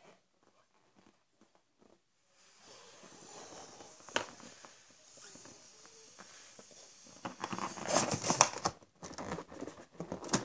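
Faint, steady blowing into a latex balloon held inside another balloon, then loud rubbing and scraping bursts for a second or two near the end as the inflated rubber balloon presses against the microphone.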